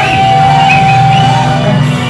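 Live rock band playing loud, with a steady bass-and-drum bed and one long held high note over most of the first second and a half.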